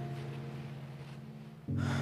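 A low held music chord fading away, then a woman's sharp gasp near the end as a new chord comes in.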